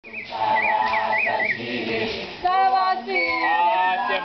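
A group of voices singing a traditional Swazi dance song, with a high warbling call over the first second and a half.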